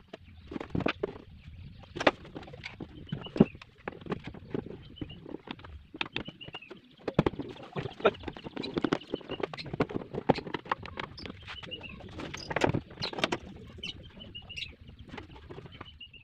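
Wooden knocks and plastic clicks as a plywood box is handled and quick-release bar clamps are fitted to it, in irregular bursts with a few louder knocks near the end. A bird chirps in short falling series every few seconds behind it.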